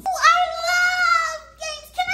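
A high-pitched voice singing a long held note, then a second held note near the end.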